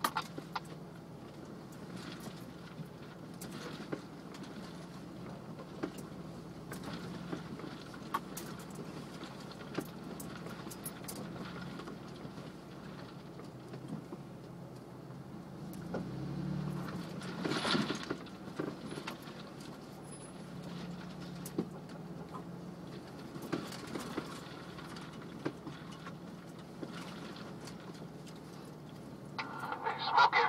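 Jeep engine running at crawling speed, heard from inside the cab, with scattered knocks and rattles as it works over rock. The engine gets louder for a few seconds about halfway through, with a sharp clatter.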